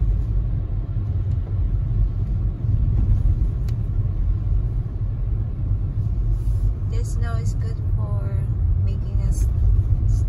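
Moving car heard from inside its cabin: a steady low rumble of engine and tyres on the road.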